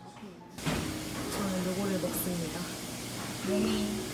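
Indoor café background: people's voices talking over steady room noise. They start abruptly about half a second in, after a brief quieter stretch with faint music.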